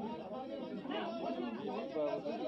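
Only speech: softer, off-microphone voices talking in the room, with some chatter.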